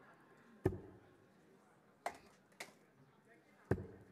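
Four short, sharp knocks at uneven intervals over faint hall noise, the first and last the loudest.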